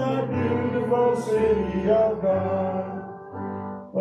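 Congregation singing a hymn with instrumental accompaniment of held low bass notes under the voices; the singing breaks off briefly near the end before the next line.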